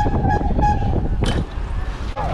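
Wind rushing over the camera microphone as the bicycle rolls along. Short, high squeaks or toots repeat about three times a second and die out before halfway, and there is a sharp click a little after a second in.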